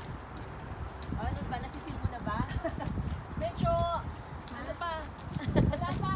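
Footsteps of several people walking on a paved parking lot: a run of short, uneven thuds from shoes on the pavement, with brief voice fragments now and then.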